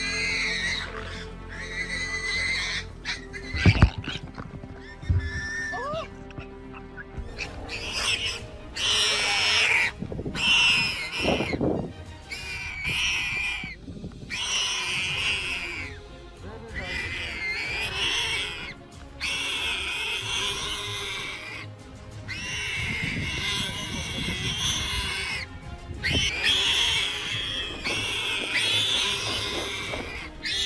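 Warthog squealing repeatedly in high, wavering cries: distress calls of a warthog caught by a leopard. Background music runs underneath, and there are two sharp knocks a few seconds in.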